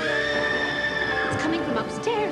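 A long, high-pitched scream held for just over a second, then breaking off, over suspenseful background music.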